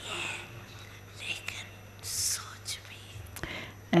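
Soft, whispery speech, too faint to make out words, with a few sharp hissing 's' sounds, the loudest about halfway through, over a steady low hum.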